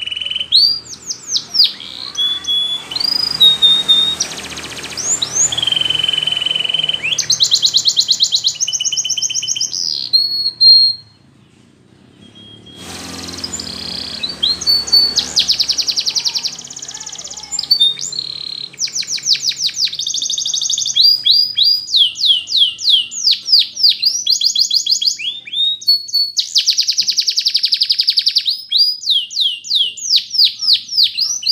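Canary singing in the Russian flute style: a long song of fast trills, sweeping whistles and held flute-like notes, with a short break about eleven seconds in before it starts again.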